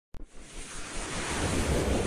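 A swelling whoosh sound effect: a rush of noise with a low rumble that grows steadily louder, after a short click at the very start, accompanying an animated logo intro.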